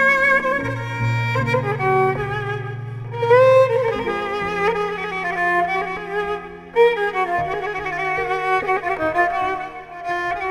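Kamancha, the Azerbaijani bowed spike fiddle, playing a slow melody with vibrato and sliding notes. Behind it an accompaniment holds low notes steady for several seconds at a time.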